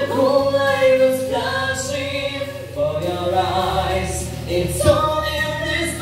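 Vocal duet sung through microphones over a musical accompaniment: phrases of long held notes that slide between pitches, with short breaths between phrases.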